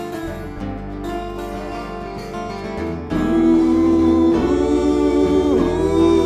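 Acoustic blues band playing live: acoustic guitars picked and strummed, with a resonator guitar played lap-style with a slide. About three seconds in the music gets louder, with a long held note and sliding pitches.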